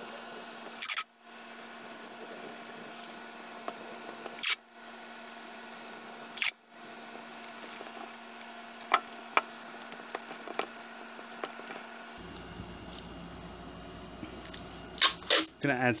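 Masking tape being pulled off the roll and wrapped onto a cardboard rocket tube: three short, loud rips spread over the first seven seconds, then a few light ticks, over a faint steady hum.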